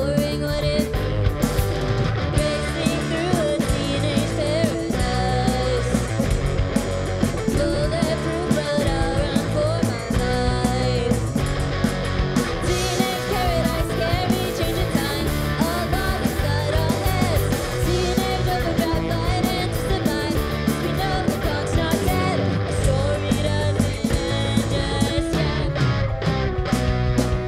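A three-piece rock band playing live: electric guitar, electric bass and drum kit, at a steady full level with no break.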